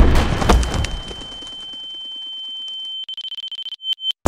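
Gunshot sound effect whose echo dies away over about a second and a half, leaving a high, steady ringing tone that swells slightly, breaks into a rapid stutter about three seconds in, and cuts off abruptly at the end.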